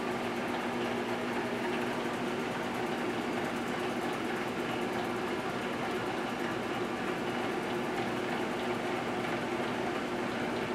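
1978 GE Dual Wave microwave oven running: a steady electrical hum with a whirring noise underneath, unchanging throughout.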